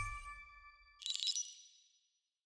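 Studio logo sound effect: a bass-heavy hit with several ringing tones fades out, then about a second in a bright, high ding-like chime sounds and rings away.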